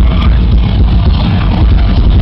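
A thrash metal band playing live at full volume: distorted electric guitars, bass and drums in a dense, unbroken wall of sound. It is dominated by a heavy, boomy low end, as a phone picks it up from within the crowd.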